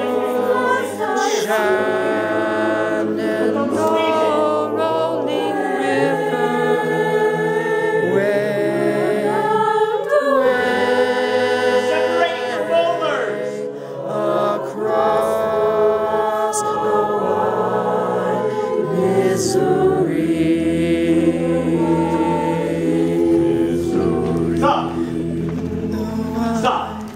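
A choir singing unaccompanied in several voice parts, with one singer's voice close to the microphone.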